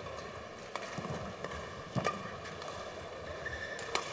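Badminton rally: a shuttlecock struck back and forth by rackets, a few sharp hits roughly a second apart, with players' footwork on the court.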